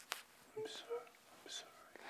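A young woman crying softly: a few short, breathy sobs and sniffles with brief voiced whimpers.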